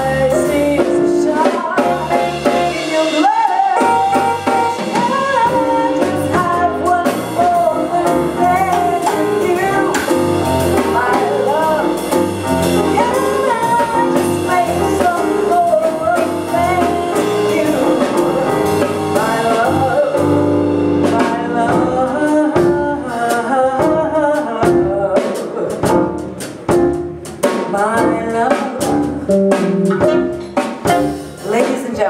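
Live blues-jazz band: a woman singing into a microphone over keyboard, electric bass and drums. About twenty seconds in the singing thins out and the music turns more broken, with sharp drum hits and dips in loudness.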